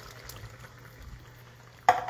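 Pineapple juice poured into a skillet of simmering coconut-milk curry sauce: a faint liquid pour and bubbling. A sharp knock comes near the end.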